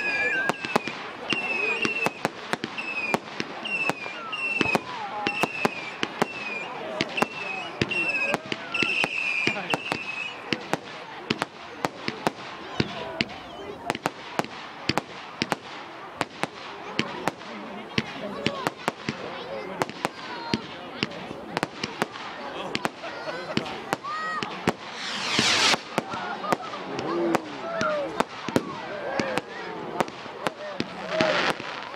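Fireworks display: aerial shells bursting overhead in a rapid string of sharp bangs and crackles. A loud, brief hissing whistle comes about 25 seconds in.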